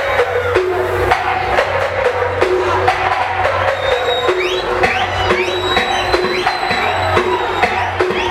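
Electronic dance music from a DJ set over a loud sound system, with a steady drum beat and a repeating synth line; short rising high notes come in about halfway.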